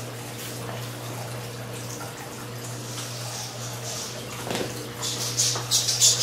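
Scissors snipping through hair, several quick sharp snips near the end over a steady low hum.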